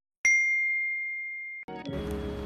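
A single clear, high ding, like a small bell struck once, ringing on and slowly fading before it is cut off abruptly; music starts again just before the end.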